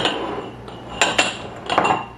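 Small glass canning jars clinking and knocking on a hard countertop as they are handled: a few sharp glassy clinks with a brief ring, at the start, about a second in and near the end.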